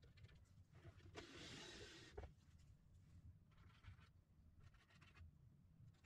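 Faint scraping of a screwdriver turning a screw through a steel angle bracket into a wooden base, in three short stretches, with a small click about two seconds in.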